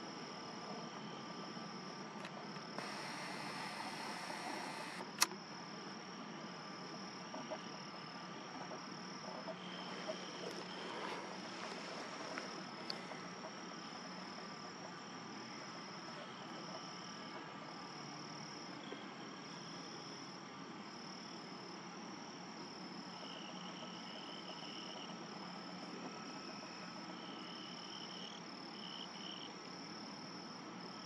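Steady, high-pitched chorus of calling insects, like crickets at dusk. About three seconds in comes a couple of seconds of rustling hiss that ends in a sharp click, and there is more faint rustling a little later.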